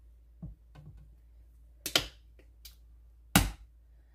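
Kitchen utensils knocking: a metal spoon and a plastic honey bottle against a stainless steel mixing bowl, four short separate clicks and knocks, the loudest about three and a half seconds in.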